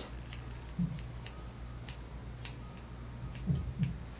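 Grooming shears snipping a dog's coat in short, irregular cuts, over a steady low hum. Two brief low sounds come near the end.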